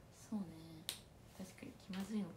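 A single sharp click a little under a second in, with brief low hums from a woman's voice before and after it.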